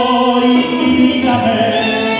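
Live tango orchestra playing, bandoneón, violins and piano, behind a male singer, with long held notes.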